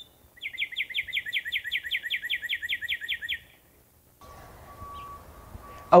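A songbird singing one trill of rapidly repeated, high, down-slurred notes, about six a second, lasting about three seconds. Near the end a faint steady background hum with a thin constant tone comes in.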